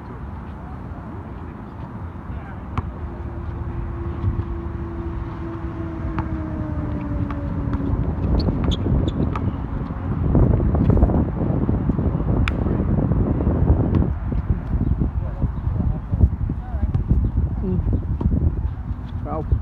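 Outdoor basketball court sound: players' voices in the background and a few sharp knocks of a basketball on the court, over a low rumble that grows louder about ten seconds in. A steady hum, falling slightly in pitch, runs for a few seconds early in the stretch.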